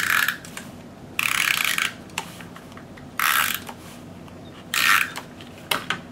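Handheld tape-runner adhesive dispenser drawn across cardstock with a ratcheting whir, laying adhesive on the back of a piece of cardstock. Four short passes, each under a second, the first already under way at the start, followed by a few light clicks near the end.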